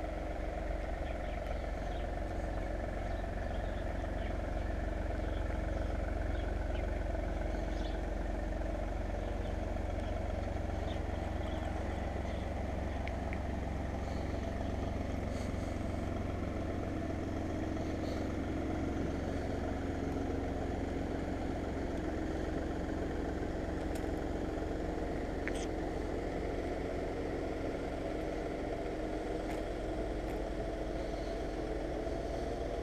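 Steady drone of a running engine with a deep rumble underneath, holding one even level throughout, with a few faint clicks.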